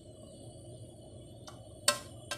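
Pot of water heating on a gas burner, a steady low rumble as small bubbles form on the bottom. A sharp clink just before the end, with a smaller click a little earlier.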